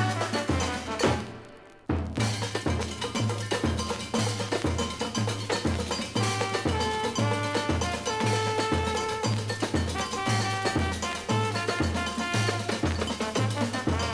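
Samba record playing: the music fades out about a second in, and after a brief gap a new tune starts with a steady, evenly repeating bass beat, percussion and held melody notes.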